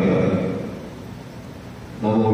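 A man's voice through a podium microphone and public-address system, a held word at the start fading into a pause filled with room noise.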